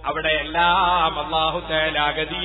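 A man chanting a melodic devotional line in Islamic recitation style, the voice holding long notes that waver in pitch.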